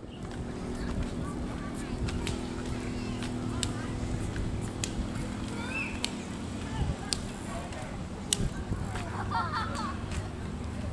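Steady rolling rumble of a child's bicycle with training wheels on a paved path, with a few sharp clicks scattered through it.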